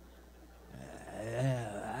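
A man's breathy, drawn-out voiced hesitation sound, like a long hum or sigh, rising and then falling in pitch. It starts about two-thirds of a second in, after a moment of quiet room tone.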